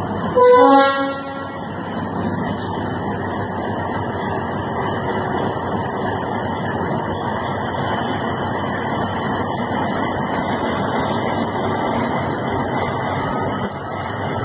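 DF7G-C diesel locomotive giving one short horn blast about half a second in, then its engine running steadily as it moves slowly along the track.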